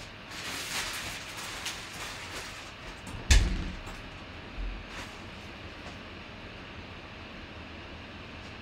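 Off-camera handling noises: rustling and shuffling, then a single sharp knock about three seconds in, a softer low thud and a small click, leaving a steady faint hiss.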